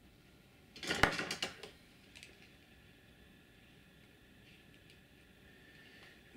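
A quick cluster of small metallic clicks and clinks about a second in, then a few faint ticks: small metal parts and wires being handled on a workbench.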